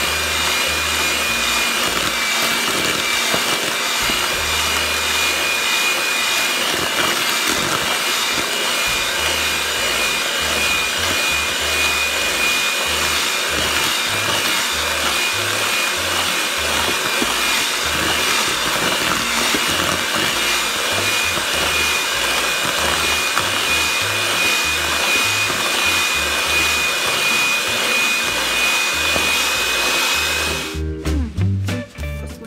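Electric hand mixer running steadily with a constant high motor whine, its beaters creaming butter and sugar in a plastic bowl.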